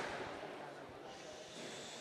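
Faint, even background hiss of room ambience, with no distinct sounds.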